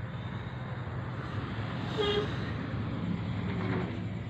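A steady low hum, with a brief higher tone about two seconds in.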